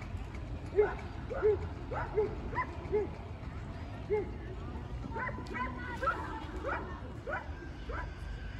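A dog barking repeatedly in short barks, roughly one or two a second, with people talking in the background.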